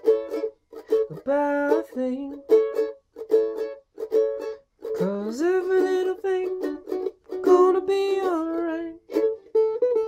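Mandolin strummed in short, cut-off chords about twice a second, moving from A to D and back to A, with a man's voice singing along over it in places.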